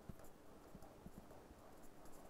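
Near silence, with faint irregular ticks and scratches of a marker pen writing on paper.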